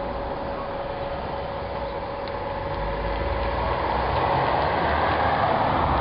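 A car driving past on a paved street; its tyre and engine noise swells over the second half and is loudest near the end.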